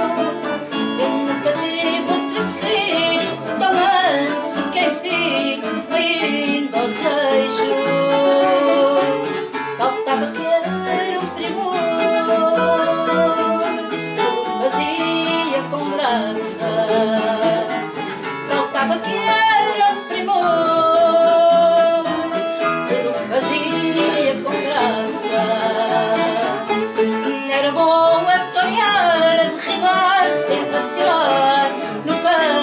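A woman singing fado to acoustic guitar accompaniment, with long held notes over plucked chords.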